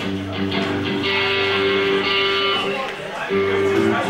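Electric guitar strumming and letting chords ring through an amplifier, changing to a new chord about three seconds in.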